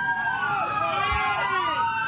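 Police car sirens wailing, two slow rising-and-falling tones crossing each other as patrol cars approach.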